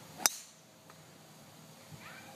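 Golf driver striking a teed golf ball: one sharp click with a brief high ringing, about a quarter second in.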